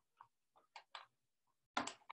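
Faint, irregular clicks and taps from small objects being handled on a wooden desk as cards of thread are picked up and moved, about six in two seconds, the loudest near the end.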